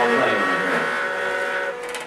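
A small string-and-guitar ensemble playing layered, sustained notes, with a rough, scraping noise about a quarter second in, easing off near the end.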